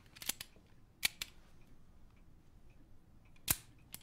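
Sharp metal clicks of a handgun being handled and checked: two quick clicks at the start, two more about a second in, then a louder single click near the end.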